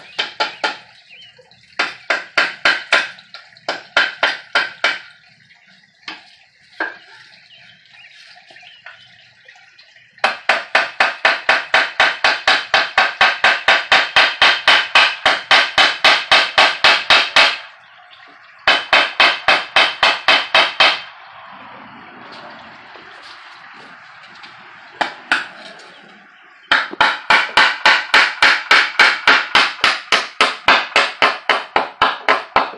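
A claw hammer driving nails into wooden boards with quick, light, evenly spaced blows, several a second, in short runs and one long run of about seven seconds starting about ten seconds in. A few seconds of steady hiss fill a pause between runs about two-thirds of the way through.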